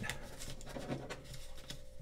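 Origami paper being folded and creased by hand: a few short crinkles and scratchy rubs of paper.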